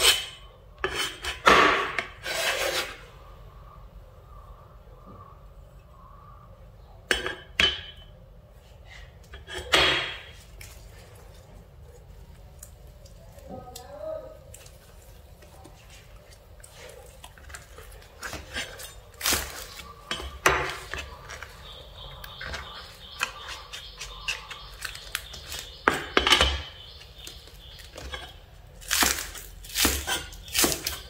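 A steel cleaver knocking, scraping and clacking on a plastic cutting board in scattered single strikes. Near the end come quick chopping strokes as green onions are cut.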